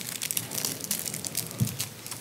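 Irregular light rustling and crackling: many small, uneven clicks over a faint background hiss.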